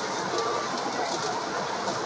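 Steady background noise with no distinct event: the room's ambience between phrases.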